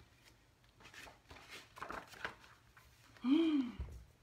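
Faint rustling of a hardcover picture book's pages being handled and turned. Near the end, a short vocal sound from the reader, its pitch rising and then falling.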